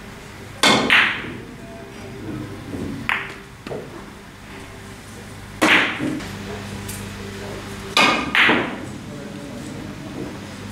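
Sharp clicks of carom billiard balls during three-cushion play: the cue striking the cue ball and the balls knocking together. The clicks come singly and in close pairs, about half a second in, around three and six seconds in, and twice around eight seconds.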